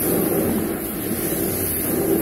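Carpet-cleaning extraction wand on a truck-mount vacuum, sucking air and water as its head is drawn across the carpet: a steady rushing noise with a constant high hiss.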